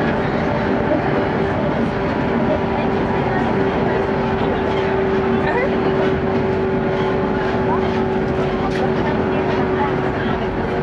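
Steady running noise inside a JR West Series 115 electric train coach at speed: a rumble of wheels on the rails with a steady hum of constant pitch.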